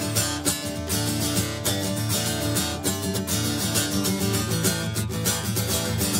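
Solo acoustic guitar playing an instrumental Delta blues break, chords struck in a steady rhythm over repeated low bass notes.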